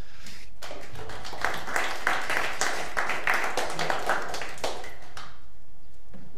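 Small audience applauding, many hands clapping, starting just under a second in and dying away about a second before the end.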